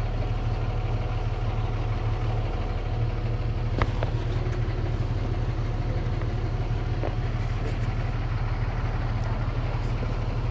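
Steady low engine drone, as of a vehicle idling, with a couple of light clicks.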